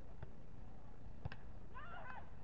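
A volleyball struck once by hand about a second in, a single sharp smack of the serve. Near the end comes a short high-pitched cry that bends up and down in pitch.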